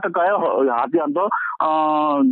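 Speech only: a man's voice giving a news report, drawing out one long syllable near the end.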